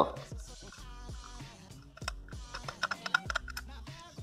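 Fiat Tipo hood hinge worked back and forth by hand, its loose pivot pins clicking and knocking in quick irregular taps: play (folga) in the hinge pins, the cause of the hood rattling.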